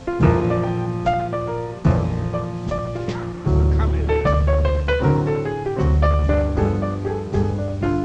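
Jazz piano solo on a grand piano in a slow blues, with double bass playing underneath; the low notes grow heavier about three and a half seconds in.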